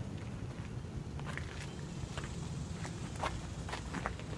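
Footsteps on pavement, a few uneven scuffs and clicks, over a steady low hum.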